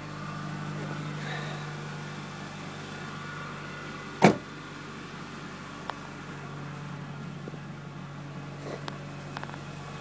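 Idle of a 1998 Ford Ranger's 2.5-litre four-cylinder engine, a steady low hum from a cold start moments earlier, exhaust running through a glasspack muffler. A single loud thump about four seconds in.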